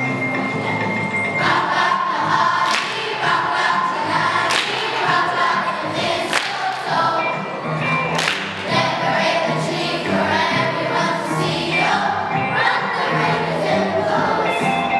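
Children's choir singing with instrumental accompaniment, a low bass line held under the voices.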